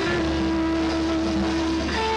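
Live rock band playing: an electric guitar holds one long note over bass and drums, changing note near the end.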